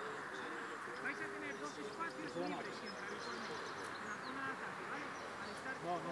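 Outdoor ambience of indistinct voices talking and calling in the background, with small birds chirping now and then.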